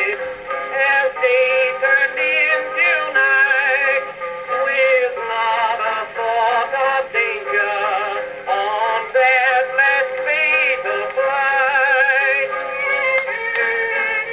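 A song: a male voice singing with marked vibrato over instrumental accompaniment, phrase after phrase.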